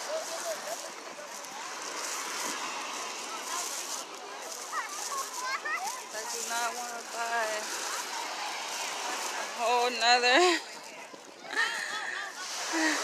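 Busy beach ambience: a steady wash of surf noise with distant beachgoers' voices, including high-pitched calls and shouts about halfway through and louder ones near the end.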